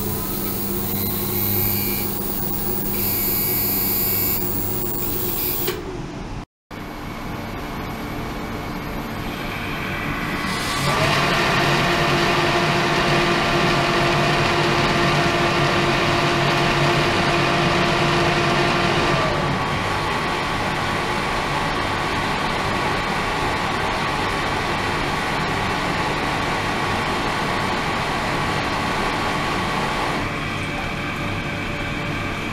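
Ultrasonic cleaning tank running with its water-circulation pump: a steady mechanical hum carrying several held tones over rushing water. The sound breaks off briefly about six seconds in, grows louder about eleven seconds in, and steps down a little near twenty seconds.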